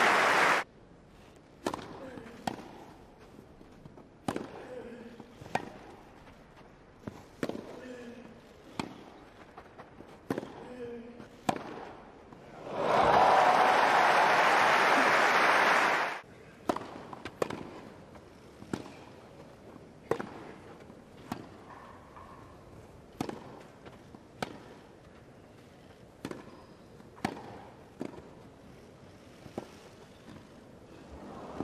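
Tennis rallies on a grass court: sharp racket-on-ball hits about once a second. A burst of crowd applause comes in the middle and lasts about three seconds, then a second rally of hits follows. Applause from the previous point cuts off just after the start.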